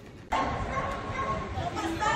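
People's voices in an airport terminal hall, cutting in suddenly a moment in.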